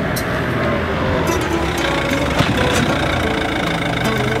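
A car's engine running close by, a dense steady noise that starts abruptly, with faint background music underneath.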